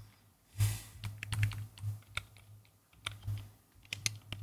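Typing on a computer keyboard: irregular key clicks, with a few heavier keystrokes about half a second and a second and a half in.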